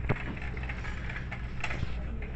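Plastic shopping cart rattling as it is pushed, giving a few sharp clicks and knocks, one just after the start and two close together near the end, over a steady low hum.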